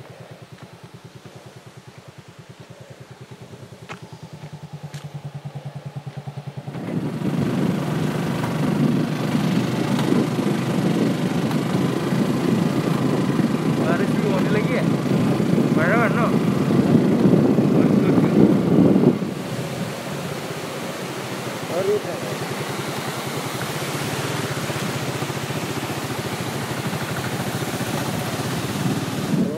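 Motorcycle engine running while riding, its firing an even, fast pulse under everything. About seven seconds in, a loud rushing noise swells over the engine, then eases about nineteen seconds in.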